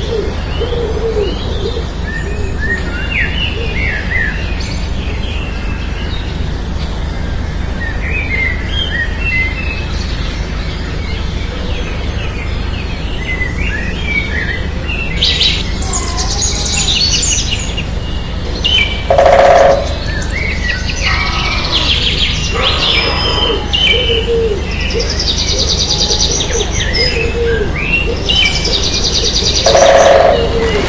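Birdsong: many small birds chirping over a steady low background noise, with some low cooing calls. About halfway through, louder and faster high trills join in. Two short, loud, lower sounds about ten seconds apart stand out as the loudest.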